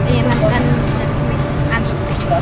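Amusement ride's drive machinery running with a steady low hum, with children's voices faintly over it.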